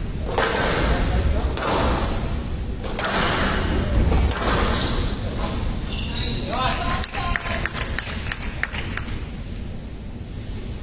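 Squash ball thudding against the court walls during play, among crowd voices echoing in a large hall. Bursts of crowd noise swell in the first half, and a quick run of sharp knocks comes around seven to nine seconds in.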